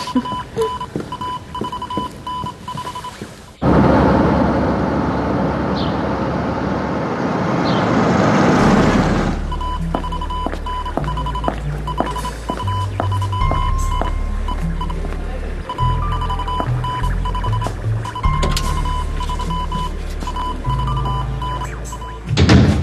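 Morse code from a telegraph radio: a steady high beep keyed in dots and dashes. A loud rushing swell of noise cuts in about four seconds in and fades out near ten seconds, and then background music with low held notes plays under the continuing Morse beeps.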